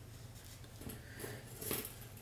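Faint rustle of a hot comb being drawn through hair, with a soft swish about three-quarters of the way through.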